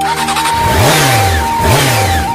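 Motorcycle engine revved twice, each rev rising and then falling in pitch, over flute music.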